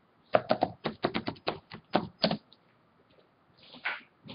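Typing on a computer keyboard: a quick run of about a dozen keystrokes over two seconds, then a pause and one softer keystroke near the end.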